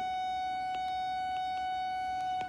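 A steady whine held at one pitch, with a few faint taps of a stylus writing on a tablet screen.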